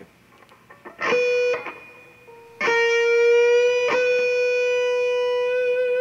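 Electric guitar playing a single high B note, picked briefly about a second in, then picked again and held ringing at a steady pitch, re-picked once a little over a second later. The B is held straight without vibrato, to establish it as perfectly in tune before vibrato is added.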